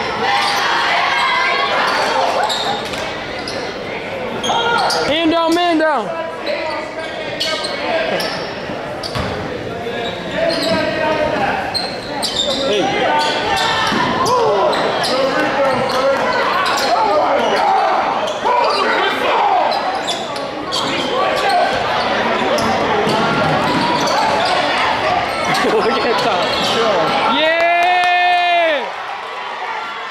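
Basketball bouncing on a hardwood gym floor amid steady crowd chatter in a large, echoing gym. About five seconds in and again near the end, someone lets out a loud, drawn-out shout.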